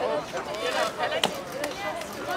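Several high-pitched voices chattering and talking over one another, with one sharp knock a little past a second in.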